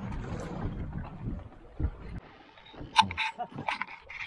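Wind and water noise on a small boat drifting at sea, easing after about two seconds, then a few sharp clicks and knocks about three seconds in.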